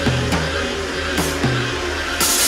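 Neurofunk drum and bass music in a sparse passage: a deep, steady bass with a couple of short downward-sliding synth notes.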